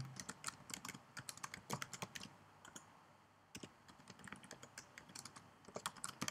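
Typing on a computer keyboard: a run of quick, irregular keystrokes with a short pause just past the middle.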